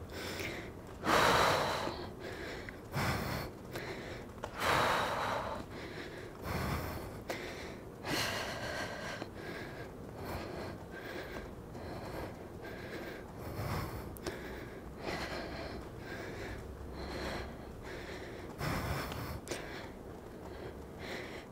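A woman breathing hard during a high-intensity cycling interval: heavy, gasping breaths every second or two, the loudest about one second and five seconds in. This is the laboured breathing of near-maximal effort.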